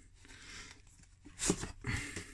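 Cardboard sleeve sliding off a clear plastic storage case, a soft scraping rustle, then two brief knocks of the plastic case being handled near the end.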